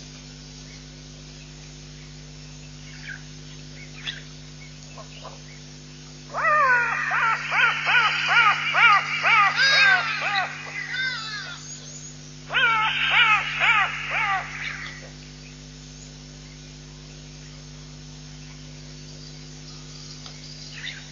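A bird calling in two loud bouts of rapid, repeated sweeping notes, about five a second. The first starts about six seconds in and lasts some five seconds; the second, shorter bout follows after a brief pause. A steady low hum runs underneath.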